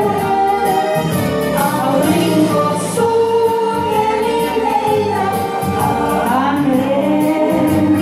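A woman singing a melody through a handheld microphone and PA over a karaoke backing track with steady bass notes and a regular beat.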